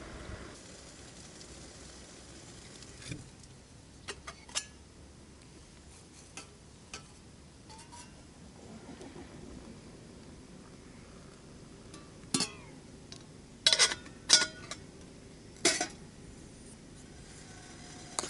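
Metal spoon and titanium cooking pot clinking and scraping: a few light clicks at first, then four louder, sharp clinks with a brief metallic ring in the second half.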